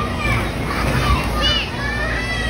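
Children playing and calling out over a hubbub of voices, with a high child's squeal about one and a half seconds in.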